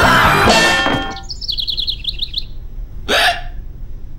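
Cartoon soundtrack: music stops about a second in, then a rapid run of high chirps for a second or so, then a short swish just after three seconds.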